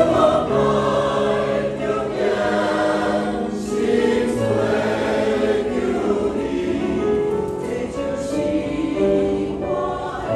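Mixed church choir of men's and women's voices singing a hymn in held, sustained notes.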